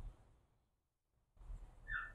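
Faint handling sounds of a slingshot being loaded, soft rustles and light knocks from the hands and pouch. A brief high chirp comes near the end.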